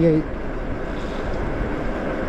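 Steady rushing noise of an e-bike ride: wind over the microphone and tyre hiss on wet pavement, with no distinct motor tone or knocks.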